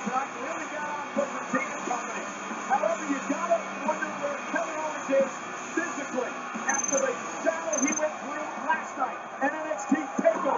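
Television broadcast audio of a wrestling show: music playing under voices.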